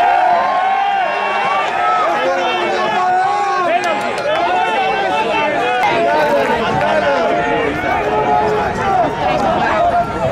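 Several voices shouting and calling over one another on a football pitch during play, from players, coaches and onlookers.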